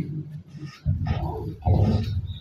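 Microphone being handled and passed along, giving irregular low rumbling thumps and rustles.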